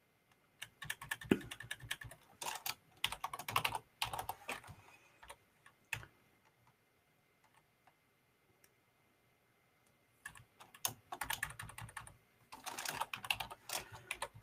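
Computer keyboard typing: two bursts of quick keystrokes separated by a pause of about four seconds.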